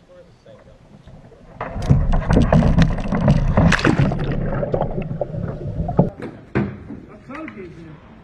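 Water splashing and churning against a kayak-mounted camera in a loud, rough rush lasting about four seconds, starting about a second and a half in, with one sharp knock near the end.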